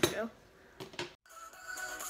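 A couple of light clinks, then, after a brief dropout a little past a second in, background music with sustained tones starts.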